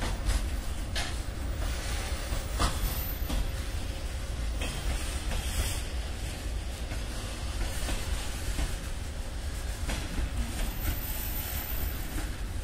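Freight train of open wagons rolling past: a steady low rumble with occasional sharp clacks as the wheels cross rail joints.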